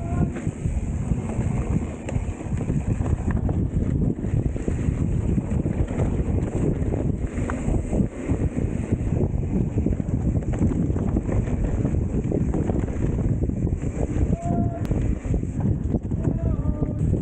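Wind buffeting the rider-mounted camera's microphone over the continuous rattle and rumble of a mountain bike rolling fast over a rough dirt trail. A brief high squeak comes near the end.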